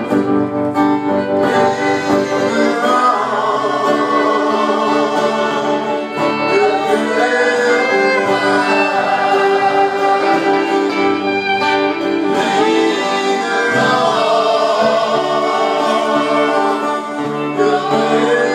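Live band music: a violin bowed over electric guitar, with a group of backing voices singing along.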